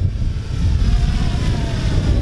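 3DR Solo quadcopter's motors and propellers buzzing as it flies in toward the camera, a faint thin whine becoming audible about halfway through, over a steady low rumble.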